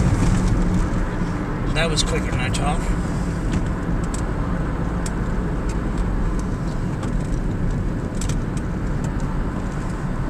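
Road and engine noise inside a moving car's cabin: a steady low rumble with scattered light knocks. A brief voice-like sound comes about two seconds in.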